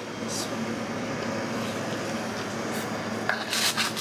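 Steady low background hum with a faint tone in it, then about three seconds in a short rustle as pizza is torn from its cardboard box.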